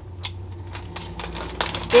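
Sheets of packing paper rustling and crinkling as they are folded by hand over a garment, a run of small, quick crackles. A voice starts right at the end.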